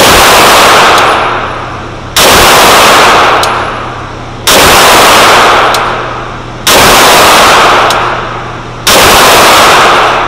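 Five single 9mm pistol shots from a Glock 17, slow aimed fire at an even pace of about one every two seconds. Each shot is very loud, overloads the recording, and rings out in the indoor range for about a second and a half.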